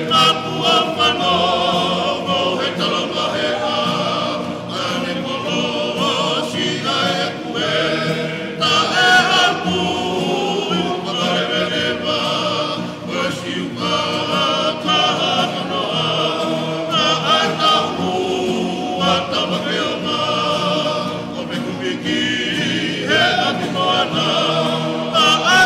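A choir singing in harmony, many voices together, the high voices wavering with vibrato.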